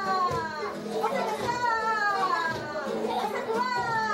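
Group of children and adults playing and calling out, with high voices sliding down in pitch several times, over an acoustic guitar being strummed.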